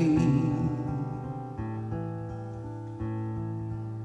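Acoustic guitar playing slow chords that ring out and fade, with a new chord struck about one and a half seconds in and another about three seconds in.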